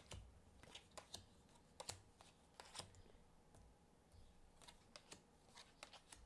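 Faint, irregular light clicks and taps of tarot cards being dealt from the deck and laid down one by one on a table.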